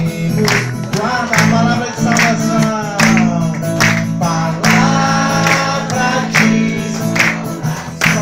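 A song with singing over a steady instrumental accompaniment, with a sharp beat about once a second.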